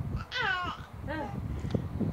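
Young infant vocalizing: a high-pitched squeal that falls in pitch, then a shorter, lower sound about a second later.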